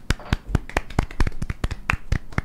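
A few people clapping by hand: a short, uneven round of applause made of quick, sharp claps.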